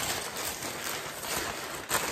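Brown paper bag rustling and crinkling as it is pulled open by hand around a loaf of bread.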